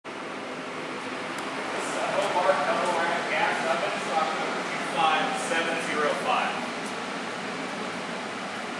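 A person talking indistinctly for a few seconds over a steady rushing background noise.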